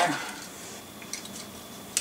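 Faint clicks and light rustling as small diecast model cars are rummaged out of a cardboard box, with a sharper clink of metal at the very end.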